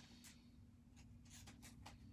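Near silence: a few faint, brief rustles and ticks of a stack of trading cards being handled, over a faint steady hum.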